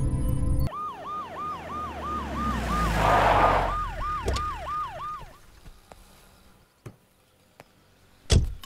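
Police vehicle siren in a fast repeating rise-and-fall, about three cycles a second, fading out about five seconds in. A music sting ends in the first second.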